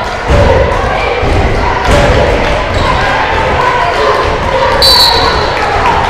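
A basketball dribbled on a hardwood court, its thuds echoing around a large gym over crowd chatter. A brief high-pitched tone sounds about five seconds in.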